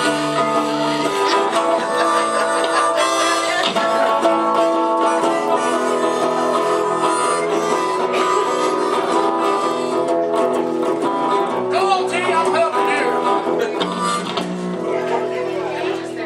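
Live blues duo: a harmonica played into a microphone, with long held and bent notes, over a plucked electric guitar accompaniment.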